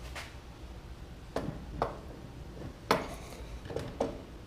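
Starter motor being fitted onto the tractor's housing: four metal knocks and clunks as it is set in place, the loudest about three seconds in.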